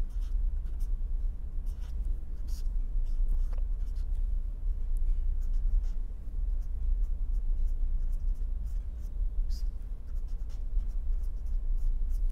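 Felt-tip marker writing on paper: short, faint strokes coming and going, over a steady low hum.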